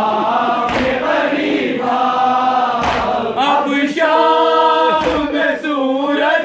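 A male reciter sings a noha, a Shia lament, through a microphone and PA in long, wailing held notes, with other men's voices chanting along. Dull low thumps come about every two seconds under the singing.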